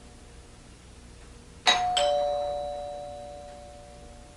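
A two-note ding-dong doorbell chime about halfway through: a higher note, then a lower one a moment later, both ringing out slowly. It signals someone at the front door.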